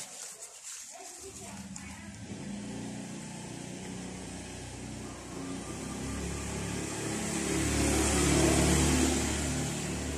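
A brief rustle at the start, then a motor vehicle's engine running, growing slowly louder toward the end.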